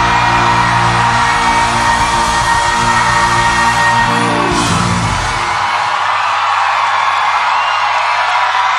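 Live band and singer ending a pop ballad on a long held note and closing chord, which stops about five seconds in. An audience cheers and screams over it and keeps cheering once the music has stopped.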